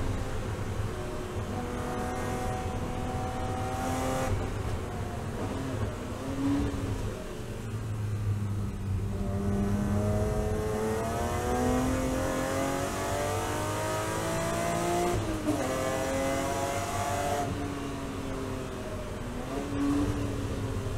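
In-cabin sound of a BMW E36 M3 race car's straight-six engine. The engine pitch sinks as the car brakes hard from about 150 km/h into a slow corner. It then rises steadily as the car accelerates out, with a gear change partway through before it climbs again.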